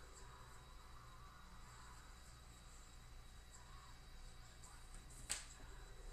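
Faint scratching of a pencil on paper, over a low steady room hum. About five seconds in there is a single sharp tap as the pencil is laid down on the paper.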